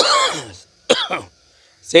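A man coughs twice: a longer, harsh cough at the start and a shorter one about a second in. Speech starts again right at the end.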